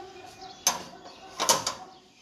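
Metal sliding barrel bolt on a steel door being worked and the door opening: two short metallic clunks, the second with a quick rattle, under a second apart.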